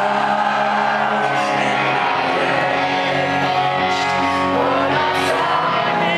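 Pop-punk band playing live in a large hall, guitars and lead vocal, with the audience's voices shouting and singing along close by, recorded from within the crowd.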